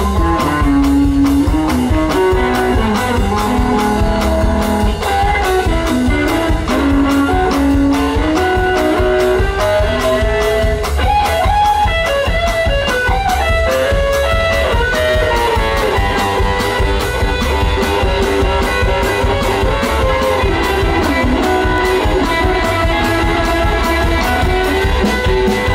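Live rockabilly trio playing an instrumental break: a hollow-body electric guitar lead over upright bass and a steady drum beat.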